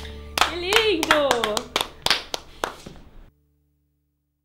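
A voice gives a long cheering shout that rises and then falls in pitch, over a few scattered, irregular hand claps, as the last notes of the studio take die away. The sound cuts off abruptly about three seconds in.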